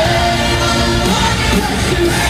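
Live pop concert music with a singer holding sustained notes over the band, loud and unbroken.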